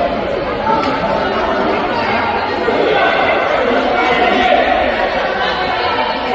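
Many voices chattering at once, talking over each other, with the echo of a large sports hall.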